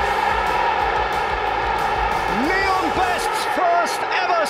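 Football stadium crowd singing and chanting, a steady wall of many voices. In the second half a single voice rises and falls above it.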